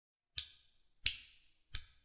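Three finger snaps, evenly spaced about two-thirds of a second apart, counting in a steady beat.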